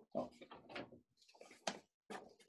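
A few faint knocks and rustles of something being handled near a microphone, the sharpest two at the start and near the end, with a brief spoken "oh" at the start.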